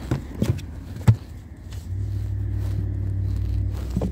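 Paperback books knocked and slid into place on the wooden shelf of a little free library: a few soft knocks, the sharpest about a second in. From about two seconds in, a low steady hum sets in underneath.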